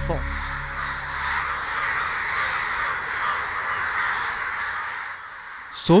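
Many crows cawing at once, their overlapping calls merging into a dense, continuous chatter that thins out shortly before the end.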